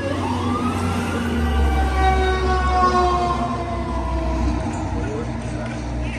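Emergency vehicle siren passing on the street: the wail sweeps up at the start, then slowly winds down over several seconds, over a low engine rumble that is loudest in the middle.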